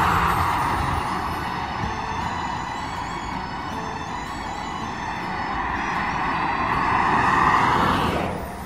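Motorway traffic passing below: the tyre and engine rush of cars swells loudest at the start, dips in the middle and swells again near the end as more cars pass.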